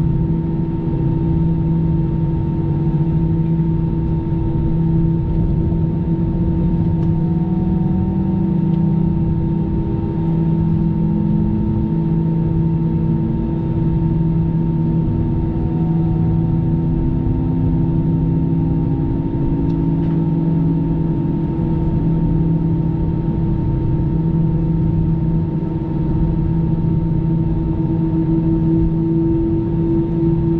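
Steady cabin noise inside an Airbus A320 airliner on the ground: a rushing hiss with several steady humming tones from the aircraft's systems. One of the tones begins to pulse near the end.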